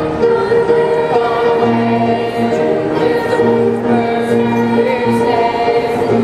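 Middle school chorus of mixed young voices singing a holiday song in parts, holding long notes that change pitch every second or two.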